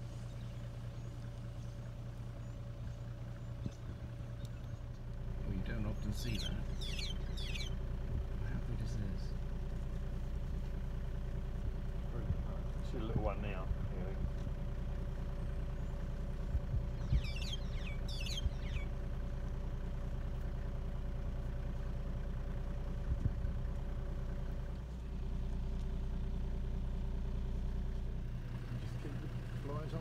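Vehicle engine idling steadily, with a low hum that grows louder about five seconds in and drops back near the end. Short high chirps come in two clusters, about six and seventeen seconds in.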